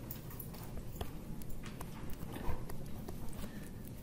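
Stylus tapping and dragging on a tablet screen while writing, a scatter of light irregular clicks over a low steady room hum.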